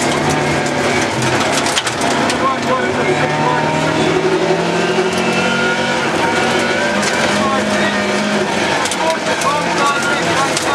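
Rally car engine pulling hard, heard from inside the cabin, its pitch climbing and dropping through the gears, with gravel crunching under the tyres and stones clicking against the car.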